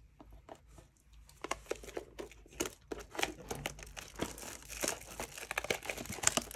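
Plastic wrapping on a cardboard trading-card box crinkling and tearing as it is peeled off, a run of irregular crackles that grows busier after the first second or so.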